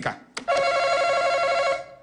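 Game-show face-off buzzer: a brief click, then one steady electronic buzz tone lasting about a second and a half that stops abruptly, signalling that a contestant has hit the button to answer first.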